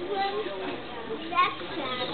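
Several people's voices talking over one another, children's voices among them, with one short, loud, high-pitched shout a little past halfway.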